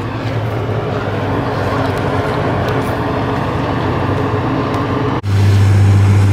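Steady low mechanical hum with a few held tones over a noisy background. It breaks off abruptly about five seconds in, and a louder low drone follows.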